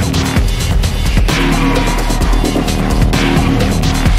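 Instrumental electronic music, loud and steady, with a heavy bass line under dense, rapid percussion hits and swelling noisy sweeps in the high end.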